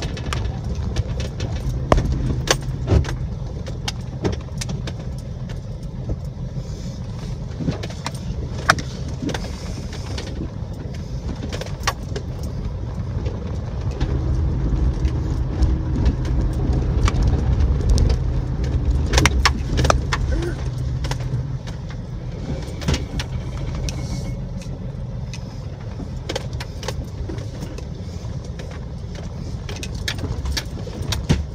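Jeep Wrangler TJ driving slowly over bumpy grass: a steady low engine and drivetrain drone, louder for several seconds in the middle, with scattered rattles and knocks as the body jolts.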